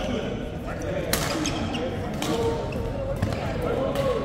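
Badminton racket strikes on a shuttlecock during a doubles rally: two sharp hits a little over a second apart, ringing in a large sports hall.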